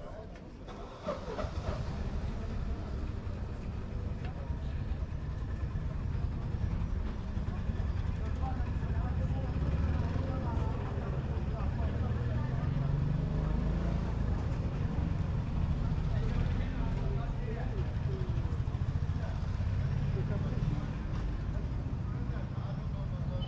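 A tuk tuk riding along, a steady low rumble that sets in about a second in as it gets moving, with voices talking indistinctly over it.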